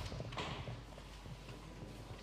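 Footsteps on a hard floor: a sharp knock at the start, then a few lighter steps, over quiet room noise.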